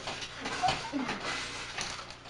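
A scuffle in a small room: a few scattered knocks and bumps, with short vocal grunts or shouts over steady tape hiss.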